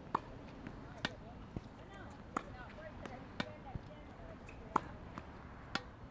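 Tennis balls struck by racquets in a steady exchange: about six sharp, separate hits roughly a second apart as feeds and swing volleys go back and forth, the loudest shortly before the end.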